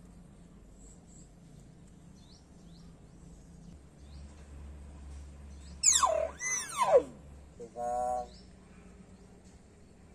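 Hill myna giving two loud swooping whistles that fall steeply in pitch, about six seconds in, then a short nasal call about a second later.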